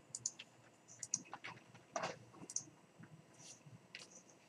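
Faint, irregular clicks of typing on a computer keyboard, with mouse clicks among the keystrokes.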